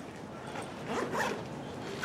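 Short scraping, rustling handling noises about a second in, over steady room hiss.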